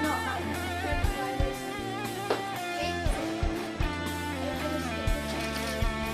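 A recorded song playing, with guitar, bass and drums.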